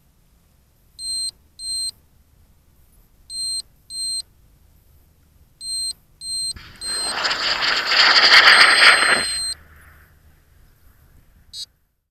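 Electronic beeper in a landed high-power rocket, most likely its dual-deploy altimeter: short high-pitched beeps in pairs, a pair about every two seconds. From about six and a half seconds in, a loud rush of noise lasts about three seconds, with one steady beep held under its end, and a brief crackle comes near the end.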